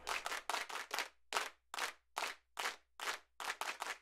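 Quiet, rhythmic handclaps in an uneven repeating pattern, about two to three a second, forming the percussion intro of a recorded worship song before the vocals come in.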